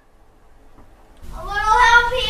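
A pause, then about a second in a single long, high-pitched cry begins, rising slightly and held steady.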